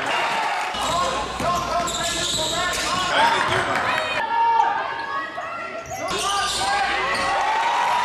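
Basketball game sound in a gym: a ball bouncing on the court amid indistinct voices in a large hall.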